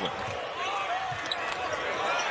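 Arena sound of live basketball play: a steady crowd hum in a large hall, with a few basketball bounces on the hardwood court.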